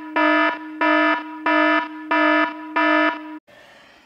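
Electronic alarm beeping in a steady rhythm, about one and a half beeps a second, each a harsh low-pitched tone under half a second long; the beeping stops shortly before the end.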